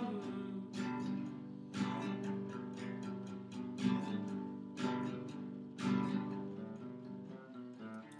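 Acoustic guitar strummed in a steady rhythm, a heavier strum about once a second with lighter strokes between, playing an instrumental break with no singing.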